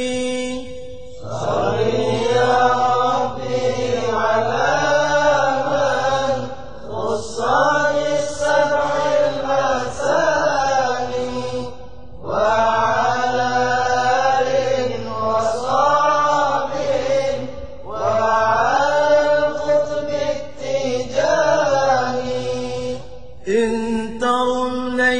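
A male voice chanting an Arabic Tijani devotional qasida of blessings on the Prophet, in long drawn-out phrases whose pitch bends and wavers. Short breaks for breath fall about every five or six seconds, five times.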